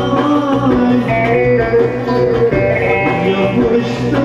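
Live Turkish folk dance tune: a bağlama (saz) plays the melody over an electronic keyboard's backing with a steady bass line.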